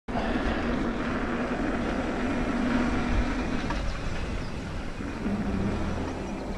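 Mountain bike tyres rolling on a tarmac lane, with wind on the microphone: a steady rushing noise carrying a faint low hum.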